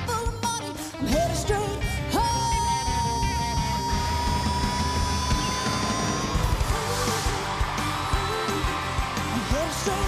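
Live country-rock band playing with a woman's belted lead vocal; about two seconds in she scoops up into one long high note, held for about four seconds, and the band plays on after it.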